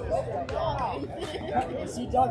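Indistinct chatter: several people talking over one another, no words clear.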